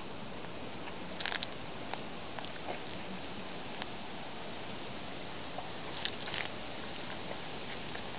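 Two brief crunching rustles, one about a second in and another about six seconds in, over a steady faint outdoor hiss.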